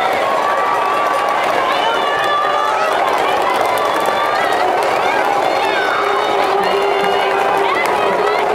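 A stadium crowd cheering: many voices shouting and chanting together, steady and loud, with held tones running through it. This is the baseball cheering section in the stands.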